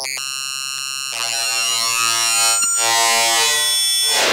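Granular synthesis output from a Byome Granulator plugin: a buzzy, sustained synthesizer-like drone made of many stacked pitched tones. About a second in it shifts pitch and timbre and gets louder as the grain pitch setting is changed, and a single click sounds near the middle.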